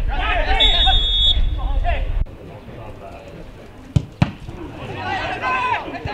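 Footballers shouting to each other on the pitch, with wind rumbling on the microphone during the first two seconds. About four seconds in come two sharp knocks a quarter second apart, the ball being kicked, and then more shouting.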